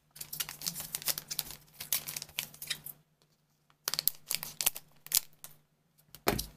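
A stack of trading cards being handled, the cards sliding and flicking against each other in quick dry clicks. It comes in two runs with a short pause about halfway.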